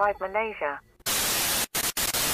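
Television static: a loud, even hiss that starts about a second in, broken by two very short dropouts.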